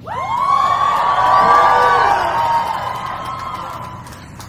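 Large crowd cheering and whooping with many voices together, rising suddenly, loudest about one and a half to two seconds in, then dying away.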